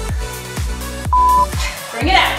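Electronic dance music with a steady beat, about two beats a second. About a second in, one short, loud, high beep from a workout interval timer marks the end of the work interval and the start of the rest.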